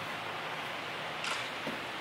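Steady background hiss of room tone during a pause in talk, with one short faint noise a little past the middle.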